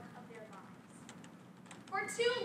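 A young woman's speech with a pause of about a second and a half, in which a few faint clicks are heard. Her voice resumes at the end.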